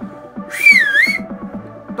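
A loud finger whistle, blown once for well under a second about half a second in, through a ring of fingers whose tips rest on the relaxed tongue; its pitch dips and rises back. Background music with a steady beat plays throughout.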